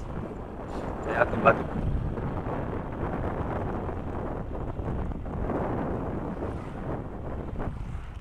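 Steady wind rushing over the microphone with the running of a motor scooter and its tyres on the road while riding.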